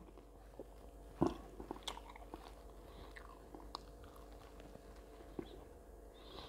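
Faint, scattered mouth clicks and smacks of someone chewing a soft oriental pastry, with one sharper click about a second in.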